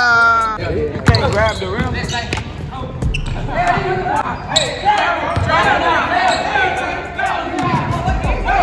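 A basketball bouncing on a hardwood gym floor, a few scattered thumps, with players' voices calling out over it.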